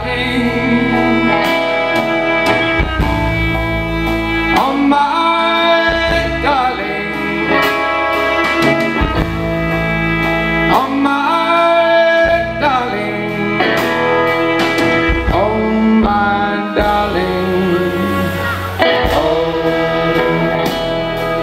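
Live folk band playing a slow song through a festival PA: guitars and bass under a gliding, sustained melody line.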